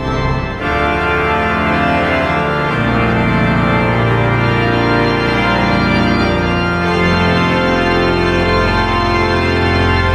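The 1963 Casavant pipe organ playing loud, full sustained chords over deep pedal bass notes, which change every few seconds.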